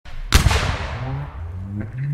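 Channel intro music: a loud crash hit about a third of a second in, with a long ringing tail, followed by a few low held notes.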